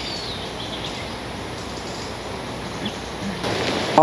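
Outdoor forest ambience: a steady background hiss with one brief, faint bird chirp near the start, and the noise swelling slightly near the end.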